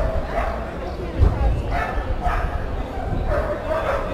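A dog barking several times in short, fairly high barks among the chatter of a street crowd.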